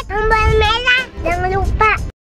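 A high-pitched, child-like voice singing a wavering melody over background music.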